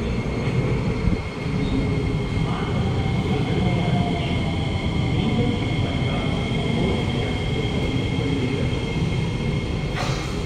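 Kawasaki–CRRC Qingdao Sifang C151A metro train pulling into a station platform and slowing. Its wheels rumble steadily on the track under steady high-pitched whines, and a fainter motor tone falls slowly in pitch as it brakes.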